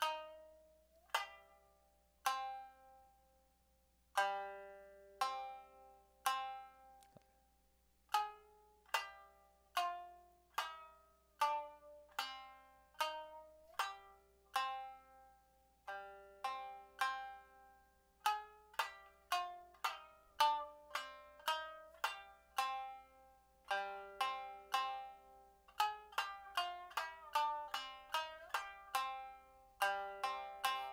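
Tsugaru shamisen played with the bachi plectrum: single notes struck in alternating down and up strokes, each ringing and dying away, with a few notes sliding in pitch. The notes come about one a second at first and quicken to two or three a second in the second half.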